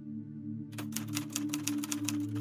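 Rapid typewriter key clacks, a typing sound effect, start about two-thirds of a second in and run on quickly. They play over a low, steady ambient music drone.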